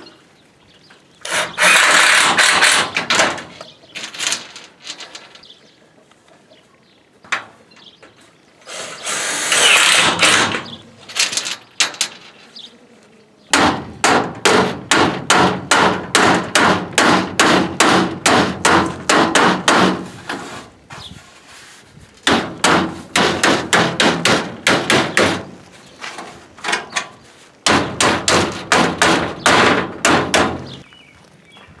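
A cordless drill driving screws into corrugated tin sheet, twice, each a burst of a second or two. From about halfway on, a hammer strikes the tin's edge in quick runs of blows, about four a second, with two short pauses.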